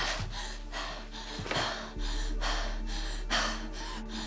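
A young woman breathing in quick, ragged gasps, about three breaths a second, over a low steady musical drone.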